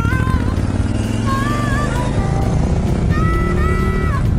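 Background music with a gliding melody playing over a KTM 950 Super Enduro R's V-twin engine running on the road. In the second half the engine's pitch rises steadily as the bike accelerates.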